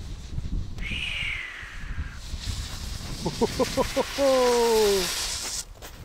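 Wind rumbling on the microphone, then a steady hiss with a person's exclamations over it: a quick run of short cries about three seconds in, followed by one long falling call.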